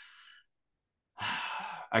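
A man's breathing between phrases: a faint intake of breath, a short pause, then a louder breathy sigh a little after halfway that leads straight into speech.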